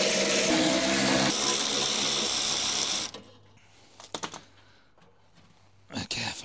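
Small electric power tool motor running as the front grille's screws are undone, its pitch shifting about a second in, then stopping abruptly after about three seconds. A few light clicks follow.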